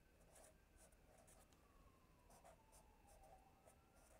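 Faint felt-tip marker writing on paper: a run of short, soft scratches as block letters are drawn.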